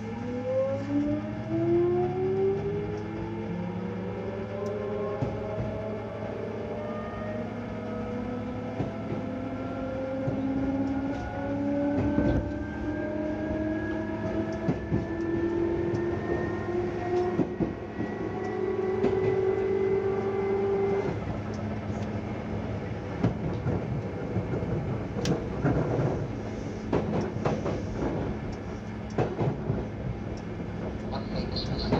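Seibu 2000-series electric train (set 2085F) accelerating, heard from inside the car: the traction motor and gear whine rises steadily in pitch for about twenty seconds, then stops as power is cut and the train coasts. Under it runs a low steady hum, with wheel and rail-joint clatter and knocks thickening near the end.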